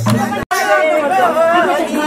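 Madal drum and tambourine music stops abruptly about half a second in, followed by several women's voices talking over one another.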